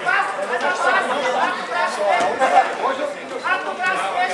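Several people talking and calling out at once in a large hall: the overlapping chatter of spectators and coaches around a jiu-jitsu match.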